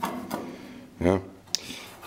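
A single spoken "yeah" over quiet room tone, with one short, sharp click about half a second after it.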